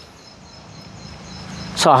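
Quiet outdoor background noise with a faint, steady high-pitched tone, slowly growing a little louder; a man's voice starts near the end.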